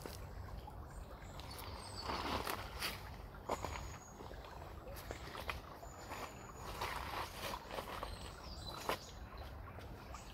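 River water trickling and lapping, with scattered sharp clicks and a few short, very high bird calls over a low steady rumble.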